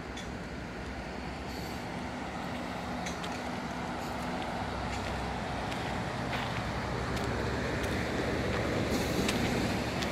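Steady outdoor rushing noise with a faint low hum, slowly growing louder, and a few light clicks.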